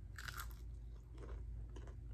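A crisp bite into a fried, battered onion ring just after the start, followed by a few softer chewing crunches about half a second apart.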